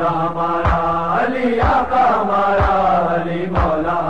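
Male voices chanting an Urdu noha in long held notes over a steady low drone, without words, with a deep thump keeping time about once a second.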